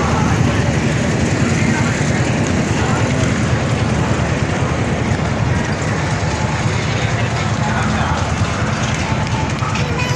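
Steady roadside street noise: a continuous low rumble of road traffic, with faint voices in the background.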